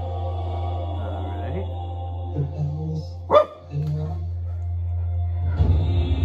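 Slow, dark trailer music with a steady low drone. About three seconds in, a dog barks once, sharply, the loudest sound.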